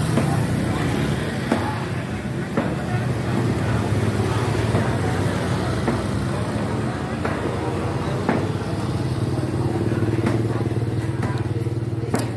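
A small motorbike engine idling steadily close by, started just before and running evenly at low revs, with a few light clicks over it.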